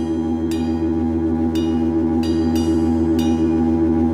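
A live band playing a song's droning intro: a steady low sustained chord with bright, ringing guitar strokes repeating over it about every half second to second.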